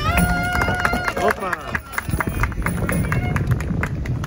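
Greek clarinet (klarino) holding one long note, slid up into at the start, then bending down and stopping about a second in. Voices talking and scattered sharp claps or knocks follow.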